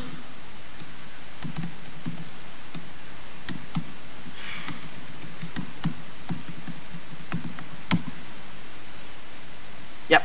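Laptop keyboard keys clicking at irregular intervals as a login name and password are typed, with a firmer click about eight seconds in, over a steady hiss.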